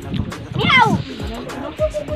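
Background music under the voices of a crowd eating together, with one short, high cry about half a second in that falls steeply in pitch.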